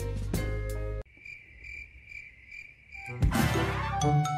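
Upbeat background music with a steady beat cuts off abruptly about a second in, leaving a cricket-chirping sound effect: a high, steady trill pulsing several times a second. Near the end a rushing sweep leads into new music.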